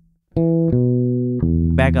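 Six-string electric bass played clean: a note plucked about a third of a second in, a second note a moment later, then a lower note at about one and a half seconds that rings on.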